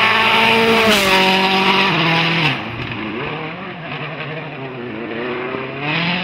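Citroën C4 WRC rally car's turbocharged four-cylinder engine at high revs as the car passes. The pitch steps down twice, about one and two and a half seconds in, then the sound drops away and wavers, and an engine note climbs again near the end.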